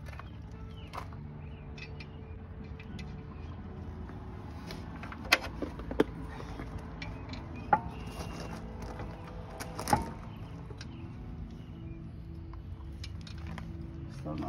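Lug nuts being threaded by hand onto the studs while a wheel is refitted: small metallic clicks and clinks, with four sharper ones between about five and ten seconds in. A steady low hum runs underneath.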